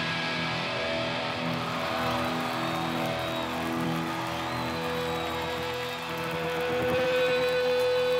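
Live rock band playing an instrumental passage: electric guitar chords and notes ringing out without drums, with one note held steadily over the last part.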